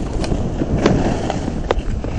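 Strong wind buffeting the microphone in a heavy low rumble, broken by a few short, sharp scrapes and clicks of skis running over hard snow.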